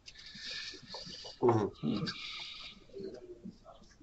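Faint, broken voice sounds over a meeting call, with a short murmured vocal about one and a half seconds in, in a pause between speakers.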